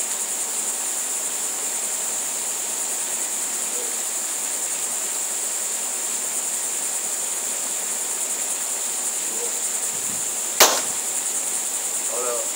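Steady high insect trilling throughout, broken about ten and a half seconds in by a single sharp pop: the CO2-powered Umarex HDR 50 revolver firing a homemade broadhead dart.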